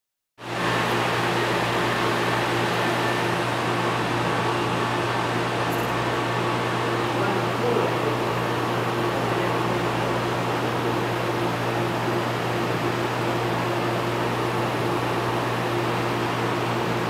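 Steady mechanical hum under an even rushing noise, the sound of aquarium pumps and fans running continuously.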